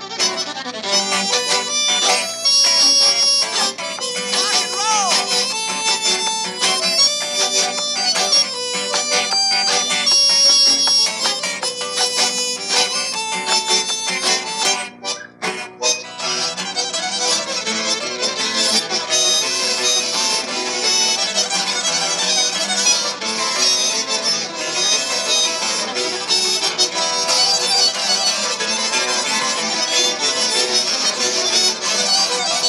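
Live acoustic folk band playing an instrumental tune: accordion, fiddle and acoustic guitar together. The sound drops out briefly about halfway through.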